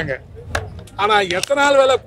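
A man speaking loudly into a bank of press microphones. His speech breaks off for about a second, and in that pause there is a sharp click, before he resumes.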